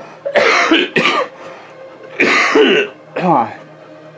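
A person coughing close by: four harsh coughs in two pairs, the last trailing off into a falling voiced sound.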